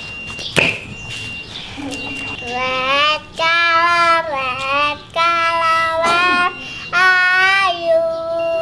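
Young girl singing a children's song in long, held, high notes that start about two and a half seconds in, with short breaks between phrases.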